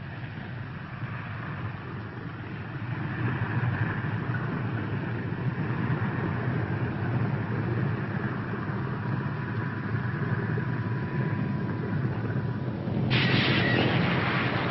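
Propeller engines of a four-engine B-24 Liberator bomber droning steadily as it comes in to land, swelling slightly after the first couple of seconds. Near the end the sound turns brighter and harsher.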